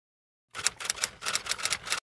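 Typewriter-style key clacks, a sound effect: a quick run of sharp strikes, about eight a second, starting half a second in.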